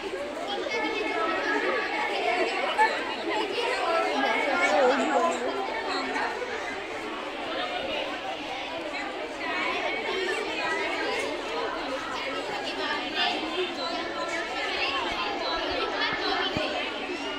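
Many girls' voices talking at once, a steady babble of overlapping chatter with no single clear speaker.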